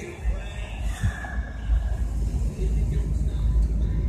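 Outdoor ambience: a steady, uneven low rumble with faint voices in the background.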